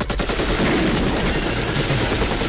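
Several automatic rifles firing long, sustained bursts together, a rapid unbroken rattle of shots.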